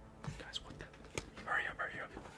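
Hushed whispering voices, loudest in the second half, with a single sharp click a little over a second in.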